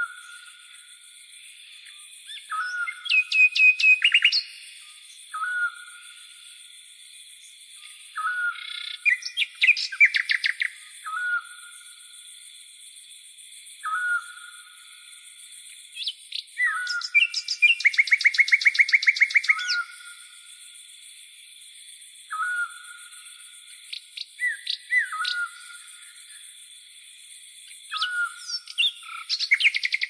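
Songbirds calling outdoors: short, repeated, down-slurred notes and quick trills come every couple of seconds, with a longer rapid trill about two-thirds of the way through, over a steady high-pitched background.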